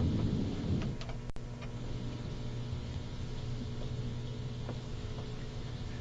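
A pause in talk-radio audio: a steady low hum with faint background noise, broken by a few faint clicks.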